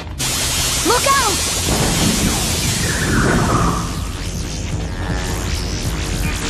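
Cartoon sound effect of a sudden blast of rushing noise that sets in at once and slowly dies away, with a brief wavering cry about a second in. Dramatic music rises over it in the second half.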